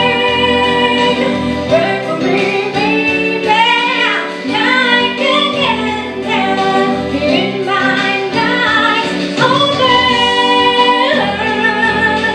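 A woman singing a slow pop song into a corded microphone over a recorded backing track, her voice held on long notes and sliding between pitches.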